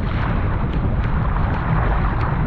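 Strong wind buffeting the microphone of a surfski-mounted action camera, with choppy water rushing and splashing along the ski's hull.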